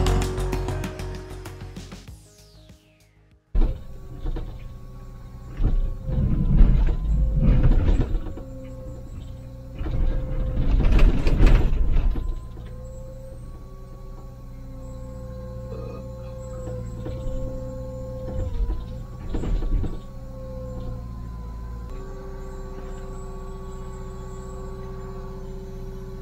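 Background music fades out and is followed by a short silence. Then comes the steady running of a Liebherr 904 excavator's diesel engine and hydraulics from inside the cab, with a held whine. Loud grinding noise comes twice as the bucket digs into rock, with smaller bursts later.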